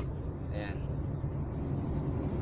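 Mercedes-Benz Actros truck's diesel engine idling steadily, heard from inside the cab with reverse gear selected.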